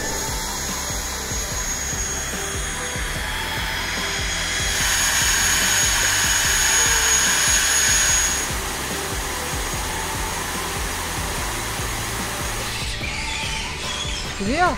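A steady whining, whirring drone with several high steady tones, swelling louder for a few seconds in the middle, over background music.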